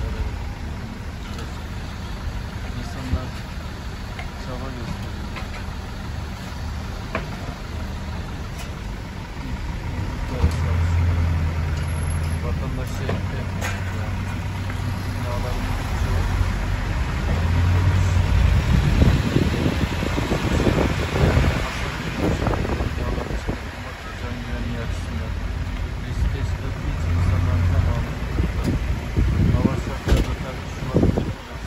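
Car engines idling in a crowded, jammed street, with people's voices in the background. About halfway through, the sound grows louder and rougher.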